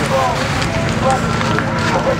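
Several people talking at once, their voices overlapping, over a steady low machine hum.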